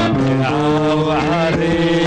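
Live band music: sustained melodic notes over a steady low line, with one wavering note a little after a second in.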